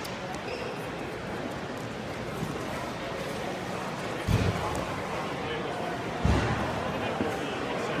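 Background chatter of people in a large hall, with two dull thumps about four and six seconds in.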